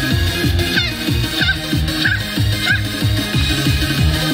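Loud idol-pop music with an electronic dance beat and a repeating bass line, played over the stage PA, with a few short high swooping sounds over it.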